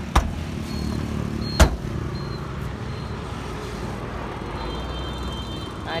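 Two sharp knocks about a second and a half apart, the second louder, over a steady low vehicle rumble.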